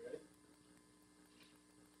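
Near silence with a faint steady electrical hum, with a brief soft sound right at the start.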